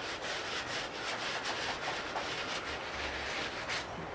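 Shoe-cleaning brush scrubbing a black sneaker with lathered cleaner, in quick, repeated back-and-forth strokes: a steady scratchy rubbing as a mark is worked off.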